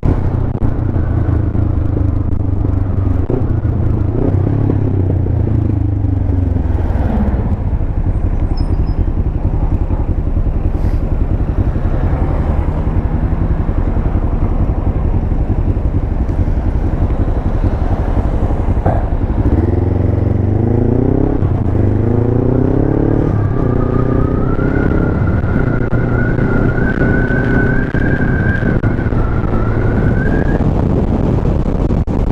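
Kawasaki ER-5 parallel-twin motorcycle engine heard from the rider's seat. The revs drop about seven seconds in and the engine idles at a stop. From about twenty seconds in it accelerates away, revs rising in steps as it shifts up through the gears.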